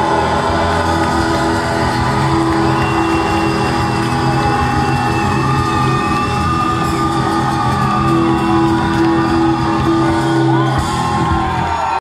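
Live band playing with trumpet and guitar, with singing over it and whoops from the audience, heard in a large hall.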